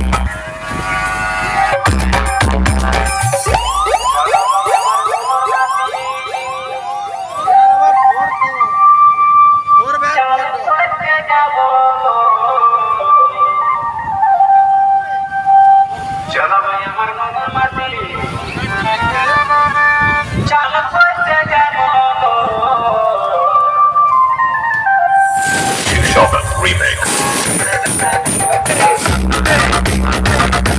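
Electronic dance music played loud through a large DJ speaker stack. After a few bass hits in the first four seconds the bass drops out, and a long run of siren-like wailing synth tones rises and falls. Heavy bass and the full beat come back about 25 seconds in.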